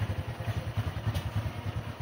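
Motorcycle engine idling with a steady, rapid low pulse.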